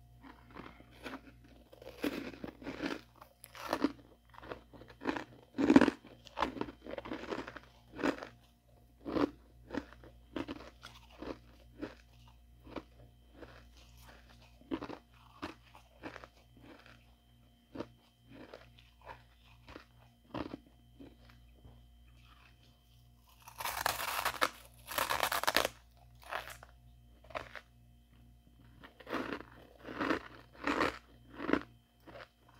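Freezer frost being bitten and chewed close to the microphone: a steady run of crisp, soft crunches. Two longer, louder bursts of crunching come a little before the end.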